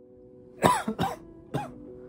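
A man coughing three times into his fist, a sick person's cough, over soft background music holding steady notes.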